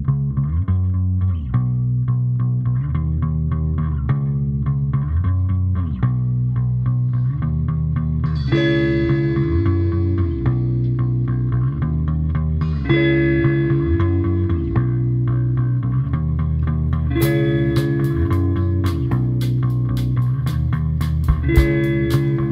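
Live rock band playing an instrumental intro: a repeating electric bass riff opens it, a guitar comes in about eight seconds in, and the drums with cymbals join about seventeen seconds in.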